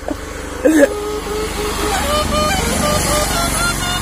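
A melody played on a small hand-held wind pipe, in short held notes that step up and down in pitch, beginning about a second in after a brief vocal sound. A steady low engine hum runs underneath.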